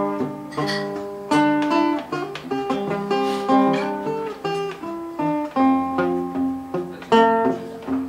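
Solo acoustic guitar played fingerstyle: plucked chords and single melody notes over a bass line in a steady rhythm, each attack ringing on.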